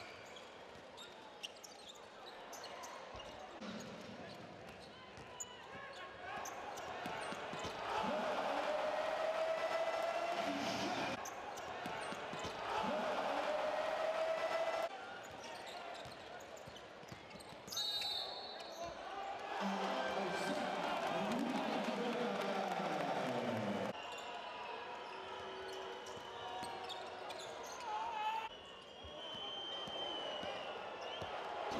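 Basketball game sound from the arena: a ball dribbled on the hardwood court amid the voices of a large crowd, cut from play to play.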